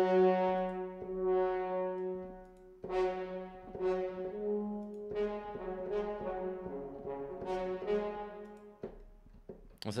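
Sampled French horns from the Spitfire Symphonic Brass 'Horns a2' virtual instrument: a held note for about two seconds, then a series of separate notes, roughly one a second, that die away near the end.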